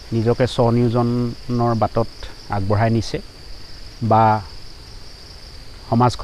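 A steady high-pitched insect drone. Over it a man's voice speaks in short phrases, louder than the insects.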